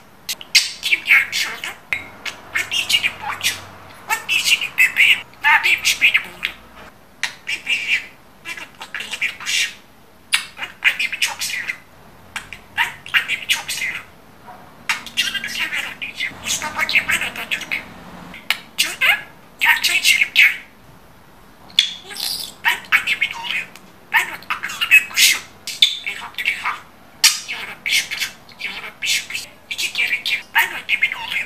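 Pet budgerigar chattering: rapid warbles, squeaks and squawks in bursts, broken by short pauses.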